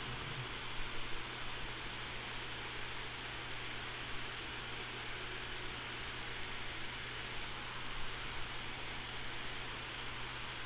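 Faint room tone: a steady hiss with a low, even hum underneath.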